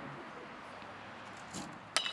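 Faint, steady outdoor ballpark background, then near the end one sharp crack of a bat hitting the pitch for a ground ball.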